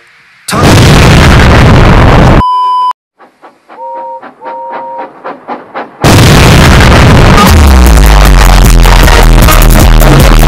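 Edited sound-effect collage: a loud, distorted noise blast, a short steady beep, then quieter clicking with two short beeps, before very loud, distorted music with heavy bass breaks in about six seconds in, along with an explosion effect.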